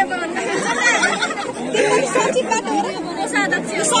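Several people talking over one another close by: overlapping conversational chatter with no single clear speaker.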